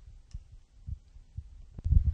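Handling noise from a handheld microphone being passed from one presenter to another: a few low, irregular thumps and bumps, the heaviest ones near the end.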